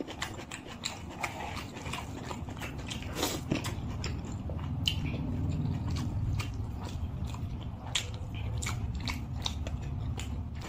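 Close-miked eating sounds: a mouthful of rice and curry being chewed, with many short wet clicks, while fingers squish and mix rice with curry gravy on a plate. A low rumble swells from about the middle to the end.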